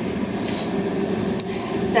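A steady machine hum, with a brief soft hiss about half a second in and a faint click near the end.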